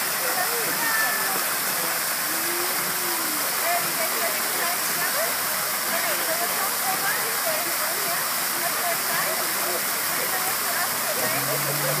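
Steady rush of a plaza fountain's falling water, with children's voices faint beneath it.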